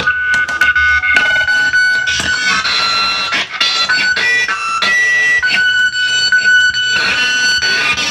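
Noise-rock band playing live and loud: a dense wall of noise with shrill held high tones that jump in pitch every second or so.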